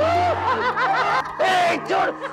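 A man laughing mockingly in the voice of a possessed character, taunting those around him, over a low steady drone.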